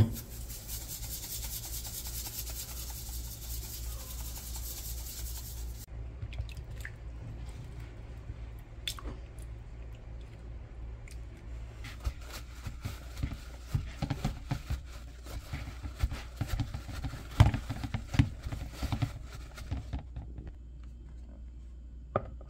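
Tap water runs into a stainless steel sink for about the first six seconds. Then, from about twelve seconds in, a paper towel rubs and pats wet raw chicken wings in a plastic bowl, in a quick run of crinkly rubbing strokes.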